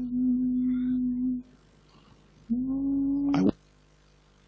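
A person's voice holding a long steady note, humming or intoning a vowel, as in prayer or worship. It breaks off, then holds a second, shorter note that ends abruptly with a sharp click.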